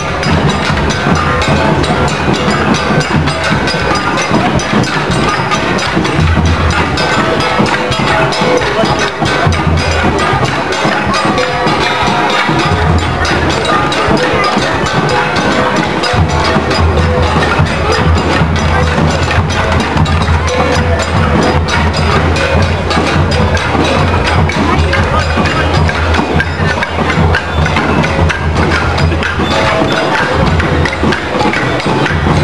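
Traditional Cordillera percussion ensemble of struck wooden instruments and drums playing a dense, continuous rhythm to accompany a street dance.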